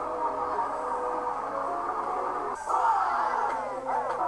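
Music playing, with sustained notes; about two and a half seconds in it changes to a brighter passage with sliding pitches.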